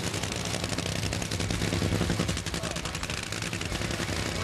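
Supercharged, nitromethane-burning Funny Car V8 engine idling: a rapid, crackling stream of firing pulses over a steady low rumble.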